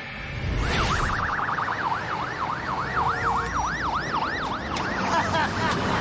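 Ambulance siren sweeping up and down in pitch, quick at first and then slower, over the low rumble of the vehicle on the road. A short burst of noise comes as the siren starts, about a second in.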